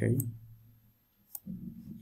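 Two sharp computer mouse button clicks, one just after the start and one about a second later.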